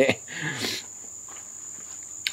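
A steady, high-pitched insect trill runs throughout, with a man's short, breathy exhale about half a second in.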